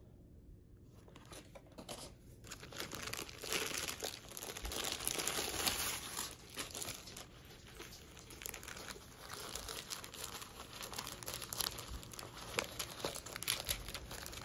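Rolled diamond painting canvas with its plastic cover film crinkling and rustling as it is handled and unrolled by hand. It starts after a quiet couple of seconds, with the loudest crinkling about four to seven seconds in and more near the end.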